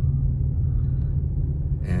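Steady low rumble of a car driving, heard from inside the cabin: engine and road noise at a constant pace. A voice starts just before the end.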